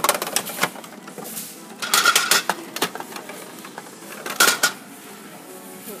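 Plastic clicks and clattering at a capsule-toy machine's outlet as a plastic gacha capsule comes out and is taken from behind the outlet's flap. The sounds come in short bursts, the loudest about two seconds in and again about four and a half seconds in, over faint background music.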